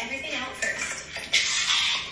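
Items being pulled out of a cluttered drawer, rustling and clattering, with a faint voice behind. A rustling hiss grows louder about a second and a half in.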